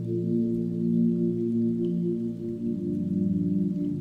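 Soft ambient background music: a drone of several low, sustained tones layered together, some of them slowly swelling and fading.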